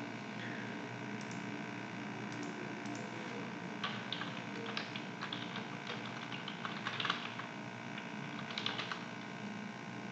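Typing on a computer keyboard: scattered keystrokes, with busier runs about four seconds in and again in the second half, over a faint steady hum.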